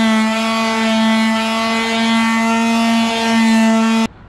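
Handheld electric sander running at a steady speed, with its pad against a fibreglass boat hull, sanding the gel coat ahead of painting. It gives a loud, constant-pitched whine with a hiss of sanding over it.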